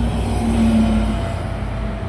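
Volvo B9TL double-decker bus's six-cylinder diesel engine passing close by and then moving away, with a steady drone and road noise.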